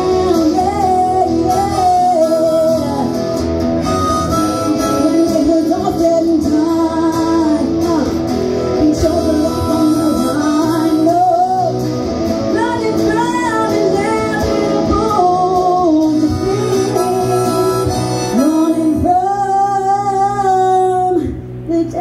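Harmonica played through a microphone, with a woman singing into a handheld microphone alongside it; the lines bend and slide in pitch. Near the end a long note is held, then the sound dips briefly just before the close.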